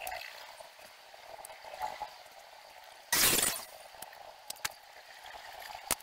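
A pneumatic brad nailer fires once about three seconds in: a sharp crack with a short rush of exhaust air as it pins wooden trim. A few light clicks and taps of handling the wood come later.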